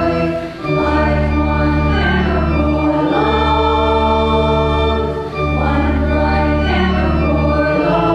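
Church hymn sung by voices with organ accompaniment. The organ holds sustained chords over a low bass, and the chord changes about every two and a half seconds.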